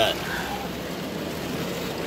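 Heavy rain falling on the car's roof and windshield, heard from inside the cabin as a steady, even hiss.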